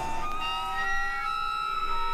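Several steady electronic tones held together, with new pitches joining one after another to build a sustained chord.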